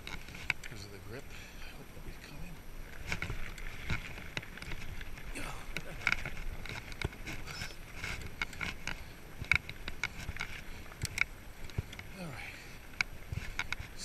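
Salsa Bucksaw fat bike riding over a dirt trail: a steady rumble of the tyres with frequent sharp clicks and knocks from the bike and its chest-mounted camera. The rider breathes hard throughout, winded from a climb.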